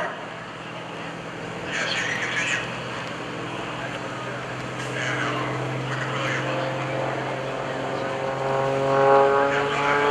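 Aerobatic MX-2 plane's 350-horsepower piston engine and MT propeller droning overhead, its pitch rising and getting louder over the last few seconds.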